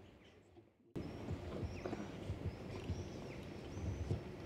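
After a near-silent first second, faint outdoor ambience with small birds chirping and scattered footsteps on stone paving.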